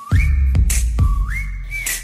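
The whistled hook of a pop backing track, over deep 808-style bass and sharp percussive hits. There are two whistled phrases, each starting on a lower note and sliding up to a held high note.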